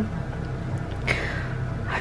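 Steady low room hum in a small room during a pause in talk, with a short breathy sound about a second in.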